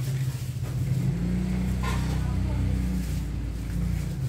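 Low hum of a motor vehicle's engine, rising in pitch and level about a second in and easing after about three seconds.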